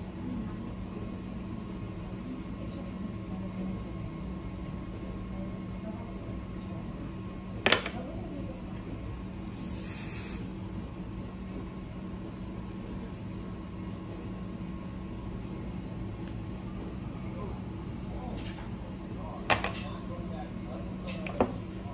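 Aerosol hairspray sprayed once in a short burst about halfway through, a high hiss lasting about a second. Two sharp clicks, one shortly before the spray and one near the end, are the loudest sounds, over a steady low hum.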